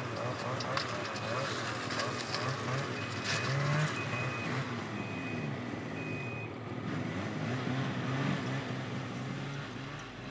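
Ski-Doo snowmobile engine idling, a steady running sound whose pitch wavers, with short faint high tones repeating at uneven intervals.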